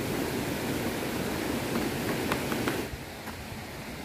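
Rocky stream rushing under a footbridge, a steady noise with a few faint clicks in it; about three seconds in it drops away, leaving a quieter hiss.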